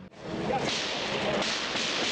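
A steady rush of noise on the sound of old news footage of a street scene. It cuts in abruptly just after the start.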